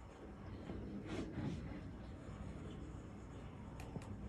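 Faint handling noise: fingers rustling in the dry bedding of a beetle enclosure, with a short rustle a little over a second in and a sharp click near the end.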